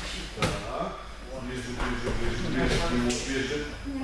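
Indistinct voices in a large reverberant hall, with a single sharp knock about half a second in.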